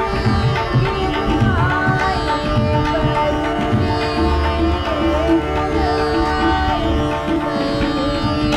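Hindustani classical music: a tanpura drone and harmonium under a sung melody that glides between notes, with tabla strokes keeping time.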